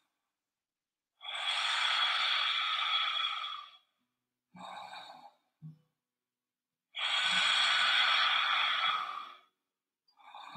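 A woman's deep, audible breaths while holding a seated yoga twist: two long breaths of about two and a half seconds each, a few seconds apart, with a shorter, fainter breath between them.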